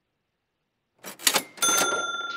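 Cash-register 'ka-ching' sound effect: a brief mechanical clatter about a second in, then a bright bell ding that keeps ringing. It marks the call's conversion being completed.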